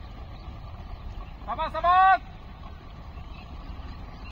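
A voice shouts a single short, loud call about a second and a half in, over a steady low rumble.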